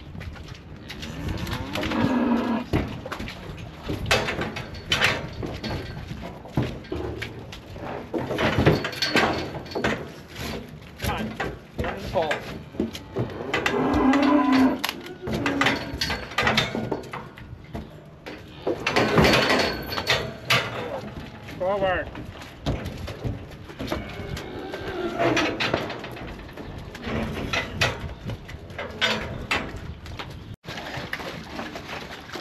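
Dairy-beef steers mooing again and again, in several long drawn-out calls spread across the stretch, with knocks and rattles in between from steel pipe gates.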